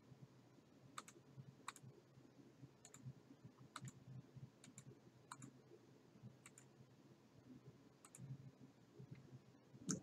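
Faint computer mouse clicks, about a dozen at irregular intervals, over a low room tone.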